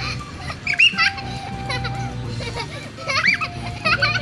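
Young children's high-pitched squeals and voices while playing on swings, with two short bursts about a second in and about three seconds in, over steady background music.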